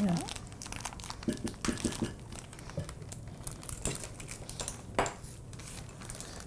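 Paper bag of brown sugar crinkling as the sugar is scooped out with a measuring cup, with light clinks of metal utensils and one sharper click near the end.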